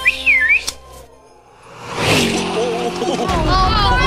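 A short warbling whistle at the start, cut off by a click. After a quieter moment, music swells in, with voices coming in near the end.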